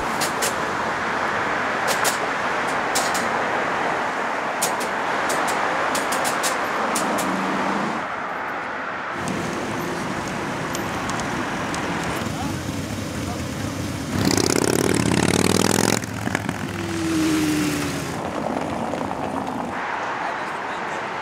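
City street traffic: a steady wash of road noise with cars driving past. About two-thirds of the way through, a passing vehicle grows briefly louder.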